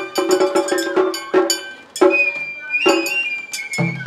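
Japanese matsuri bayashi festival music. A quick run of ringing metallic strikes from a small hand gong and drum gives way about halfway in to a held high note on a bamboo flute, with a few heavier drum strikes under it.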